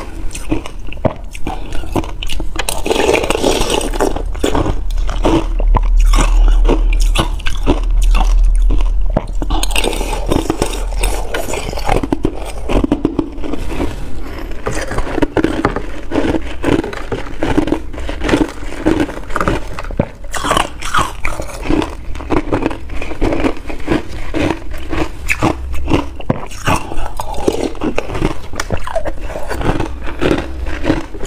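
Ice being bitten and chewed, a quick run of crisp, irregular crunches one after another.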